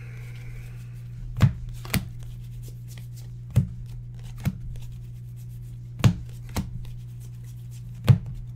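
A stack of trading cards being leafed through by hand, each card moved to the back of the stack with a sharp snap. The snaps come in pairs about every two seconds over a steady low hum.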